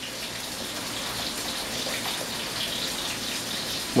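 Ground beef sizzling in a frying pan: a steady, even hiss.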